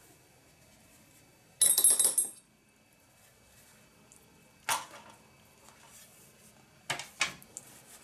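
Small hard objects clinking as painting tools are handled on a table. There is a quick, bright rattle of clinks lasting under a second, then a single sharp click a few seconds later and two more clicks near the end.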